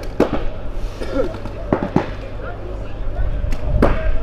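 Paintball markers firing in scattered, irregular pops, about six in four seconds, the loudest near the end, with players' voices calling out in the background.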